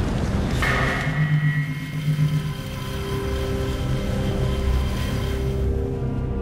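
Cinematic logo-intro sound effect: a rumbling whoosh, a sudden hit a little over half a second in, then held low and mid tones.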